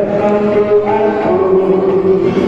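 Group of voices singing in unison in a slow, chant-like melody with long held notes.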